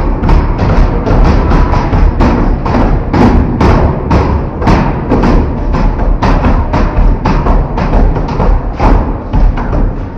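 Music with a heavy beat, mixed with repeated thuds of hands banging on a glass-panelled metal school door.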